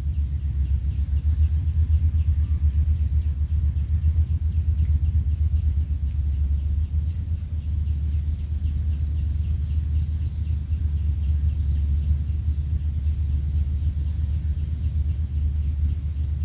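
Steady low rumble throughout, its level fluttering, with faint quick ticking high above it.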